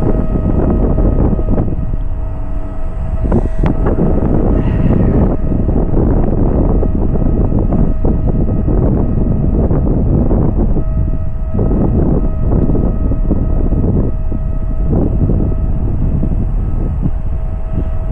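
Wind buffeting the microphone in uneven gusts, with a thin, steady high-pitched hum underneath.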